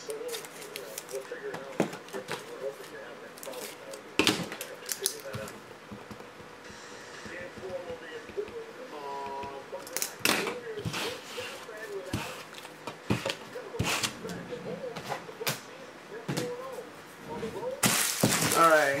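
Scattered clicks and knocks from handling and desk work, coming irregularly several seconds apart, over a faint voice in the background.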